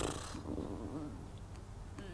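A woman's sharp intake of breath, then a faint, wavering hesitant hum, over a low steady room hum.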